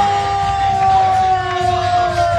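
One long drawn-out vocal call, a single held note that slides slowly down in pitch, over music.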